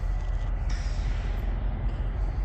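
Wind buffeting the microphone: a steady, fluttering low rumble with a hiss over it and no distinct events.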